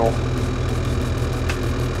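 Bobcat E42 compact excavator's diesel engine running steadily under load from the cab, holding up a very large boulder: about all the machine can handle.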